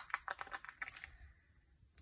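A clear plastic sticker sheet being handled, a run of light crinkles and clicks as a sticker is peeled off, dying away after about a second.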